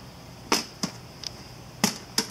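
An ammo-box-style metal case being handled: a few sharp clicks and knocks, two louder ones about half a second in and near the end, with fainter ones between.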